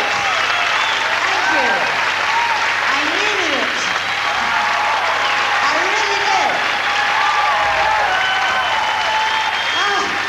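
Large concert audience applauding steadily, with voices calling out over the clapping.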